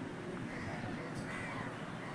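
A bird calling, over a steady low background rumble.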